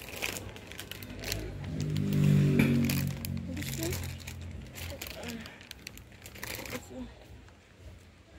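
Crinkling and rustling close to the microphone from handling, with a low wordless voice sounding for about two seconds in the middle.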